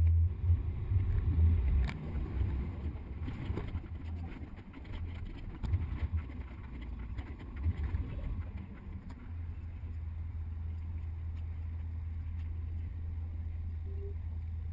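Low rumble of a double-decker tour bus driving through city streets, heard from its top deck. It is uneven for the first few seconds and settles to a steadier drone in the second half.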